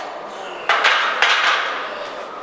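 Metal gym weights clanking twice, about half a second apart, each clank ringing briefly.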